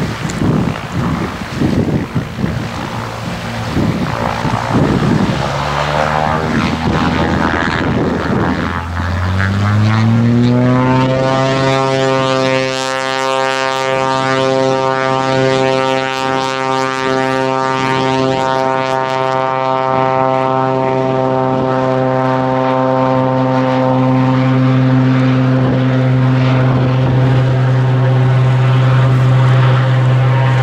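Single-engine floatplane's piston engine and propeller on its takeoff run across the water: the sound is rough and unsteady for the first few seconds, the engine note climbs as it comes up to takeoff power around ten seconds in, then holds a steady, loud drone.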